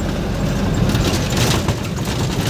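Truck engine and cab noise heard from inside the moving truck's cab: a steady low rumble, with a run of small knocks and rattles in the second half.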